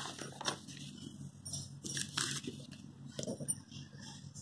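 Sheets of paper rustling, with scattered soft clicks and taps, as note pages are handled and turned over on a clipboard.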